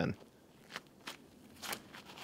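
A disc golfer's footsteps on the tee pad during his run-up and drive: about three short, sharp steps.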